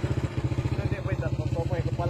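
Small motorcycle engine idling with a fast, even putter.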